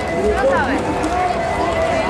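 Chatter of a large outdoor crowd of spectators: many voices talking over one another at once, with no single voice standing out.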